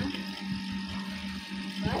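A steady low hum, with soft bumps and rustling as a baby is brought down onto a man lying on a bed.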